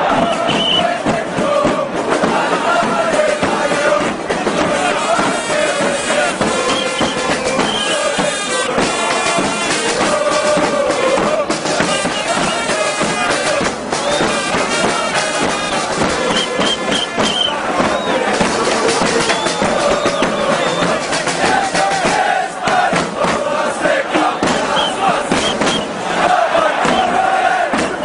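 Large crowd of football supporters chanting and singing together in the stands, loud and continuous.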